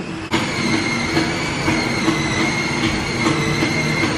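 Arcade machine sound: a sudden start about a quarter second in, then a steady high electronic tone held over a low stepping tune.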